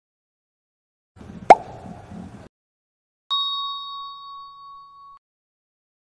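Intro-animation sound effects: a short rush of noise with a sharp pop about a second and a half in, then a single bell-like ding about three seconds in that rings on steadily and fades away over nearly two seconds.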